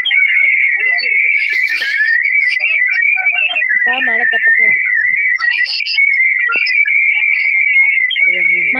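A continuous high, slightly wavering whistle-like tone that holds one pitch throughout, with faint voices underneath.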